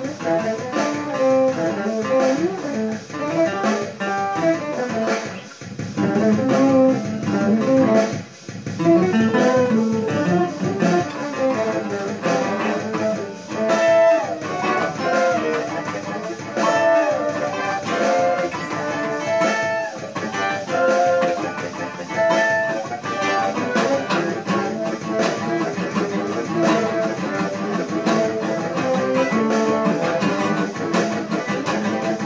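Acoustic-electric guitar playing an instrumental jazz-fusion piece: a busy run of picked notes and chords, with a brief drop in level about eight seconds in.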